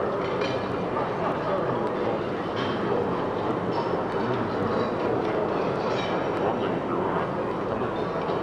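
Ambient drone music mixed live from tape loops, cassette, turntable and synthesizer: a dense, steady, rumbling wash with scattered faint clicks.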